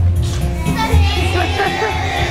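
Backing music with a steady bass line plays, with young children's voices chattering over it.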